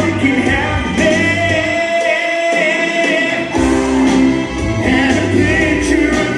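Live amplified music with a man singing into a microphone. The bass drops out about two seconds in and comes back about a second and a half later.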